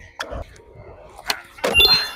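Skateboard on concrete: a sharp pop of the tail about a second and a quarter in, then a loud landing near the end, followed by a brief ringing tone.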